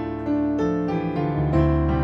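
Electronic keyboard played in a piano voice, slow notes or chords starting about every half second, with a low bass note coming in near the end.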